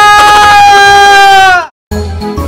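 A man's long, loud, high-pitched scream, held on one steady note, dipping in pitch as it cuts off about a second and a half in.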